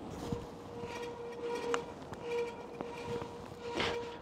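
Electric bike riding along quietly: a faint, steady motor hum under low road noise, with a few light clicks.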